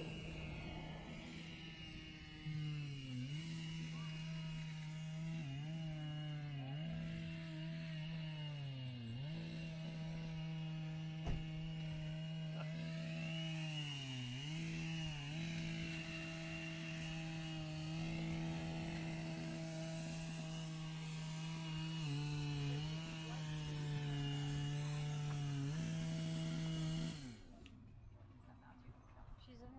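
Two-stroke chainsaw running at high revs as it carves wood, its pitch sagging briefly every few seconds and recovering as the throttle eases or the chain bites. It drops away abruptly near the end.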